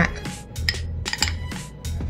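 A metal spoon clicks lightly several times as jam is spooned into toasted bread cups on a foil baking tray, over background music.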